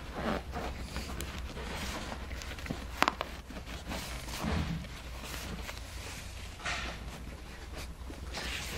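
Rustling and rubbing of a fabric seat cover being pulled down over a foam seat-back cushion, with a sharp click about three seconds in, over a low steady background hum.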